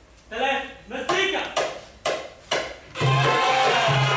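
A voice calls out, then four sharp strikes about half a second apart, each with a shouted syllable, like a count-in. About three seconds in, a group of voices starts singing together over a low pulsing beat.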